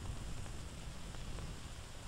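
Faint steady hiss with a low hum: the background noise of an old film soundtrack, with one brief click at the very start.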